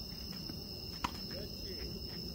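Crickets chirping steadily in a high, even tone, with a single sharp knock about a second in.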